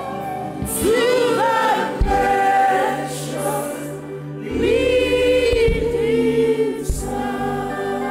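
A congregation singing a gospel worship song together in long, held phrases.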